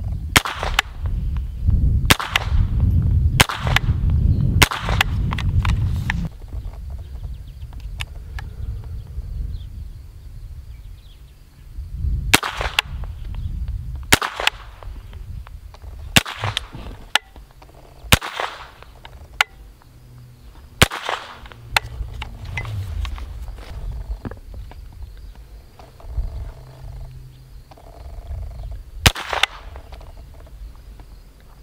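Smith & Wesson M&P 15-22 pistol, a semi-automatic .22 LR with an 8-inch barrel, firing about a dozen single, deliberate shots at uneven spacing: several in the first five seconds, a pause, a string from about twelve seconds in, and a last shot near the end. These are slow, aimed shots while zeroing a red-dot sight.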